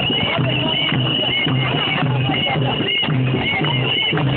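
A marching crowd chanting and clapping in a steady rhythm.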